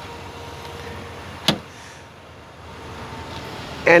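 Outdoor background noise with a faint steady hum, and one sharp click about a second and a half in.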